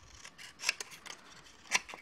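Small scissors snipping through paper in a series of short, irregular cuts, two close together near the end.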